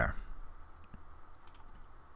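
A quick pair of faint computer mouse clicks, about one and a half seconds in.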